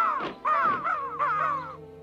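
Cartoon crows cawing: a quick run of about three caws, stopping shortly before the end.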